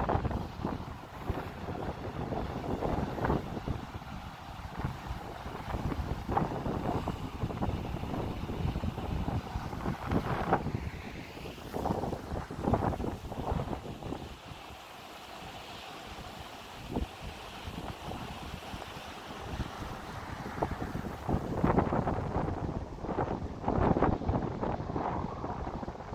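Wind buffeting the microphone in irregular gusts, easing off in the middle and strongest in the last few seconds.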